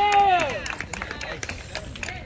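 A spectator's long, drawn-out shout, its pitch rising and then falling, ending under a second in, followed by a few scattered sharp claps.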